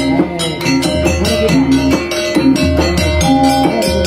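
Banjar musik panting ensemble playing a lively piece: plucked string melody over drums and percussion keeping a steady beat.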